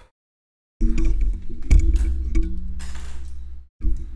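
A small motor-driven rotary tool running and grinding into a laptop motherboard to open a hole in it, with a low hum whose pitch drops partway through and a few sharp clicks. It starts abruptly about a second in, stops briefly near the end and starts again.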